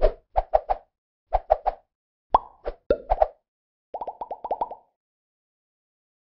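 Cartoon-style pop sound effects for an animated logo sting: short plops in quick groups of two or three, then a faster run of about eight lighter pops that stops a little under five seconds in.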